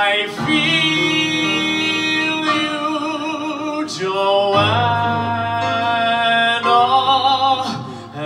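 A man singing a slow ballad live, holding a few long notes with vibrato and sliding up into one of them about halfway through, over an instrumental accompaniment.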